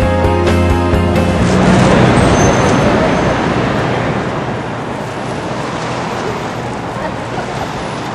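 Music with held notes breaks off about a second in, giving way to the steady noise of city street traffic, which slowly grows quieter.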